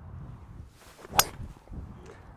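A Stix driver striking a golf ball off the tee: one sharp, clean crack about a second in.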